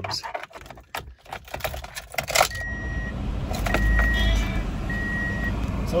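Keys jingle at the ignition, then a 2003 Pontiac Vibe's 1.8-litre four-cylinder engine starts about two seconds in, revs up briefly and settles to idle. Throughout the idle a dashboard chime beeps about once a second.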